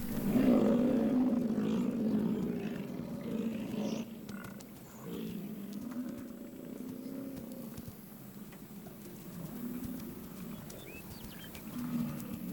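American bison bulls bellowing during the rut: repeated deep, drawn-out roaring calls, loudest in the first two seconds and continuing more weakly after that.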